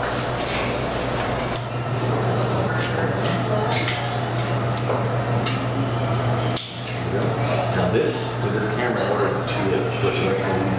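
Small metal clicks and clinks of a twin-lens reflex camera being handled while roll film is threaded onto its take-up spool, over low talk and a steady hum.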